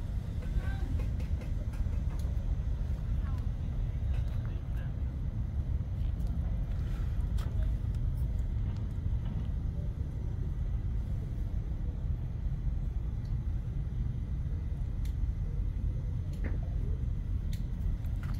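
Steady low outdoor rumble with a few faint scattered clicks.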